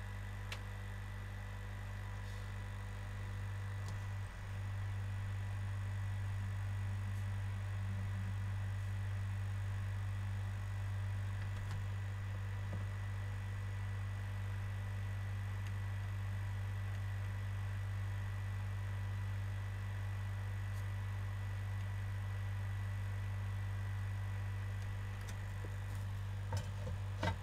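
Steady low electrical hum with fainter steady higher tones above it, getting slightly louder about four seconds in, with a few faint clicks.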